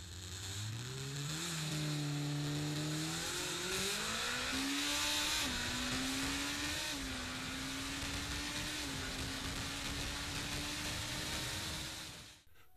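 Kawasaki Ninja ZX-14R's 1441cc inline-four engine pulling hard at high speed, heard from on board with rushing wind. The engine note climbs, drops at upshifts about three and five and a half seconds in, and holds near steady through the second half.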